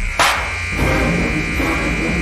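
A steady high-pitched tone held for about two seconds, with a sharp click just after it begins.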